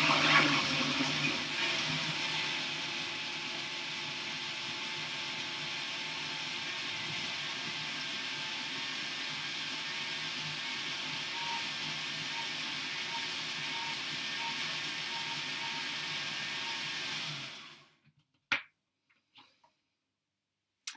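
Countertop jug blender running, pureeing raw vegetables into gazpacho. It eases and grows quieter over the first couple of seconds, then runs steadily before cutting off a couple of seconds before the end, followed by a single click.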